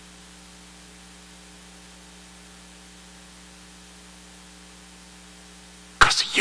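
Steady electrical mains hum with a low buzz and hiss, unchanging throughout.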